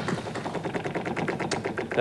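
Game-show prize wheel spinning, its pointer flapper clicking rapidly and evenly against the pegs, about ten clicks a second.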